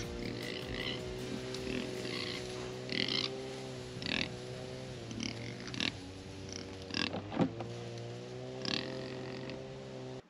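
Pigs grunting and squealing in short calls every second or so, over a steady low hum.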